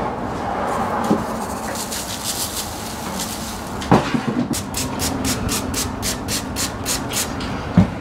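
A condiment shaker being shaken over a box of fish and chips: about a dozen quick, hissy shakes, roughly four a second, that start about halfway through, after a thump. Steady kitchen background noise runs underneath, and there is another knock near the end.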